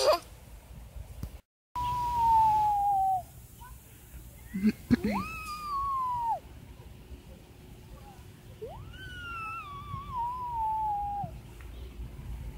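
A young girl's voice making three long, high, drawn-out calls, each sliding down in pitch; the second and third swoop up first. A short laugh and a sharp click come about five seconds in.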